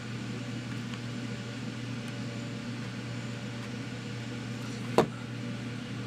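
Steady low background hum with no speech, broken by one sharp click about five seconds in.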